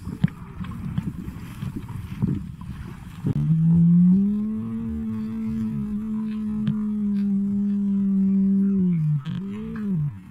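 Underwater rumble and crackle from the submerged camera. About a third of the way in, a long steady droning hum starts, slides up at its start and holds for about six seconds. It sags at the end, followed by a short rising-and-falling hum.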